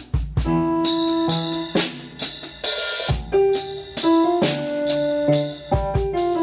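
Electronic keyboard with a piano voice playing held chords alongside a Dixon drum kit, with kick drum and snare hits keeping time. A cymbal crash rings out about three seconds in.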